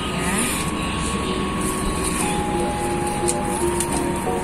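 Steady background rumble with a slow line of long held tones over it, changing pitch every second or two.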